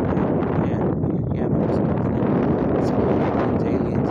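Wind buffeting the microphone: a steady, loud rumbling noise.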